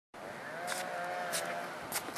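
Outdoor background noise cutting in suddenly, with a distant engine running: a faint steady engine tone holds for about a second amid a general hiss, broken by a few short clicks.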